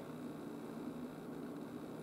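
Quiet room tone: a steady faint hiss with a low hum underneath and no distinct events.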